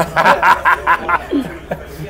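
A man laughing: a quick run of about six short ha-ha pulses in the first second, then trailing off more quietly.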